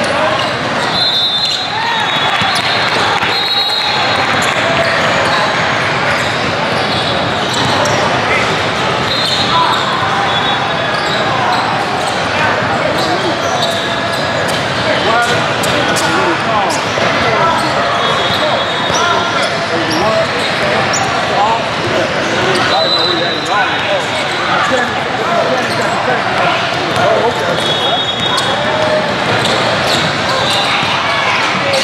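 Crowd chatter in a large echoing hall, with basketballs bouncing on a wooden court and short high-pitched sneaker squeaks now and then.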